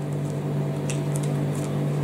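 Microwave oven running with a steady electrical hum, with a few faint light clicks over it.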